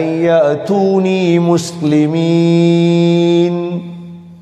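A man's voice chanting Arabic in melodic Quran-recitation style, winding through ornamented gliding notes and then holding one long steady note for about a second and a half before fading near the end.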